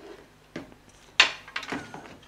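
Items being handled and set down on a tabletop during unpacking: a few short light knocks, the loudest a little over a second in, followed by smaller clicks.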